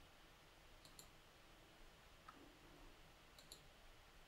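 A few faint computer clicks in near silence: a quick double click about a second in, a softer single click just past halfway, and another double click near the end.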